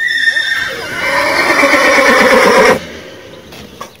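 A horse whinnying loudly: one long call lasting nearly three seconds that ends abruptly.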